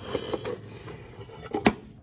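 A few faint clicks, then one sharp click or knock about one and a half seconds in, against low room noise.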